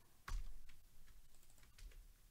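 Typing on a computer keyboard: one sharper knock about a third of a second in, then a run of lighter key clicks.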